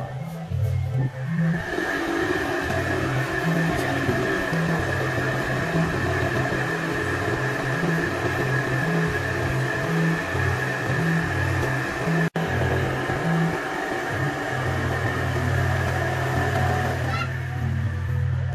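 Electric air blower running steadily as it inflates a clear plastic water-walking ball, with a constant whine in its rush of air; it starts about a second in and stops about a second before the end. Background music with a steady bass beat plays throughout.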